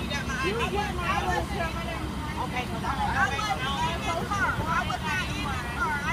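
Indistinct talk of several people at once, over the steady low rumble of emergency vehicles idling.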